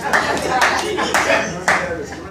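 Hands clapping in a slow, even rhythm, about two claps a second.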